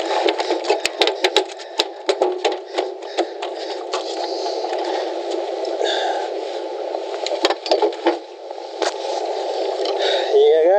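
Clattering knocks and rattles on the boat deck as a freshly landed mulloway is handled in the landing net, in two bursts, near the start and again about three-quarters of the way through, over a steady rush of wind on the microphone.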